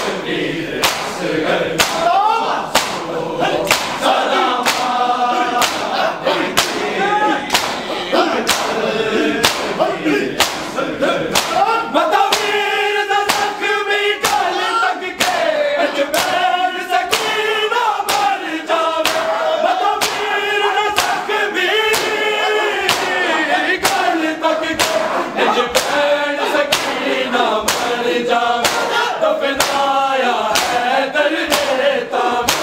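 A large crowd of men singing a noha lament together, cut through by the sharp slaps of matam: open hands striking bare chests in unison in a steady rhythm.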